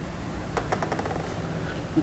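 A pause between spoken phrases that holds a steady low hum and hiss, with a quick run of faint clicks around half a second to a second in.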